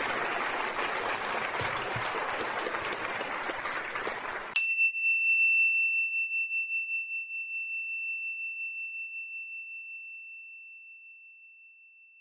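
Audience applause that cuts off abruptly about four and a half seconds in. A small bell is then struck once and rings a single clear high note, fading slowly away.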